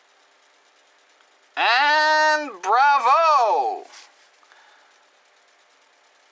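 A person's loud wordless exclamation, starting about one and a half seconds in and lasting about two seconds: a held note, then a wavering rise-and-fall in pitch, over faint room tone.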